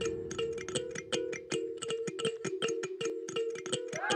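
Film score music: a fast, slightly uneven ticking pulse over two low sustained notes that alternate back and forth.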